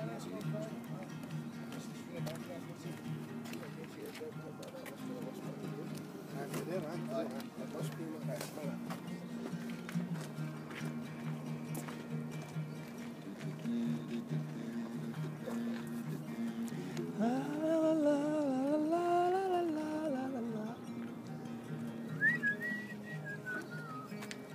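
Steel-string acoustic guitar played in a steady pattern of low ringing notes, with a man's voice singing a long wavering phrase over it about two-thirds of the way through. A short, high gliding tone comes in near the end.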